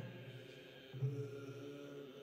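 Buddhist priests chanting a sutra in a low, steady monotone, in held phrases about a second long.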